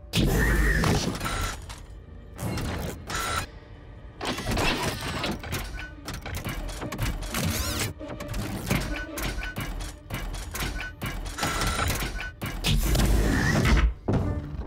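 Cartoon sound effects of a robot moving about: a loud mechanical burst at the start, then a run of clanks, thuds and short mechanical beeps, with another loud burst near the end, all over background music.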